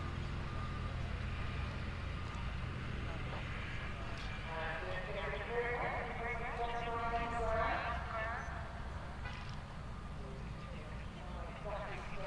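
A steady low hum, with a distant, unintelligible voice talking from about four to eight seconds in.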